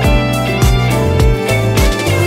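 Instrumental karaoke backing track of a Vietnamese pop ballad, with no lead vocal. A steady beat of about two drum hits a second plays under sustained chords.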